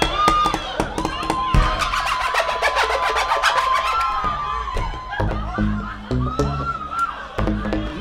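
Ovation Balladeer acoustic guitar played live fingerstyle with percussive body hits, its bass notes doubled by an octave pedal. A voice holds one long high note over the guitar in the first half, and driving bass thumps come on the beat in the second half.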